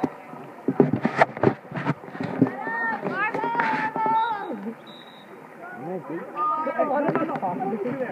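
Excited voices shouting and calling out at a poolside. There are a few sharp impacts about one to two seconds in.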